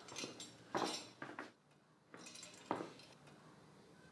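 Several short metallic clinks and clatters of hardware and tools being handled, spread over the first three seconds, the sharpest near the end of that run.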